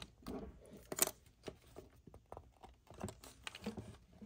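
Plastic pry pick clicking and scraping against the metal and plastic casing of a Conner CP2045 2.5-inch hard drive as it is pried apart: irregular small clicks, the sharpest about a second in.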